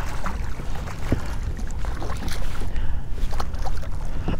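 Wind rumbling on the microphone, with scattered short splashes and knocks as a hooked redfish thrashes at the surface beside a kayak.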